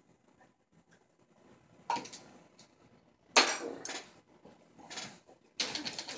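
Small handling knocks and a clink on a desk, then a plastic trigger spray bottle spraying water onto a CD lying on a towel near the end.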